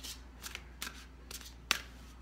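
A deck of angel cards being shuffled by hand: short swishes and slaps of cards about every half second, the loudest near the end.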